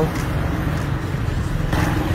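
Motorcycle engine running steadily under way, with a constant rush of wind and road noise.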